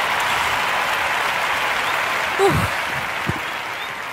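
Applause, steady at first and then dying away over the last second and a half, with a brief vocal exclamation about two and a half seconds in.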